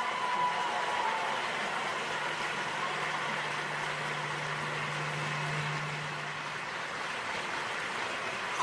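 Audience applauding steadily through a pause in a speech.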